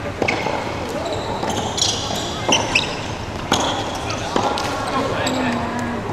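A doubles rally with small rackets: several sharp hits of racket on ball and ball on floor, with sneakers squeaking on the wooden gym floor in an echoing hall.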